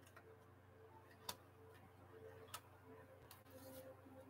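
Near silence: faint room tone with two soft clicks about a second apart as a deck of tarot cards is handled.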